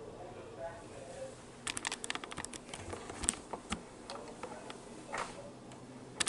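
Handling noise from a hand-held camera: a quick run of sharp clicks and taps on the body close to the microphone, starting a little under two seconds in, with a single click later on.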